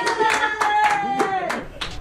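Irregular hand clapping, a quick run of claps that stops near the end, with a person's voice drawn out on one long note over it that falls away shortly before the clapping ends.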